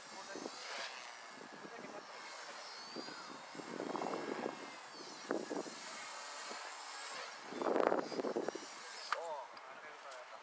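Walkera V120D02S electric micro RC helicopter flying at a distance, its high motor and rotor whine gliding up and down in pitch as the throttle changes. A person's voice is heard too, loudest about eight seconds in.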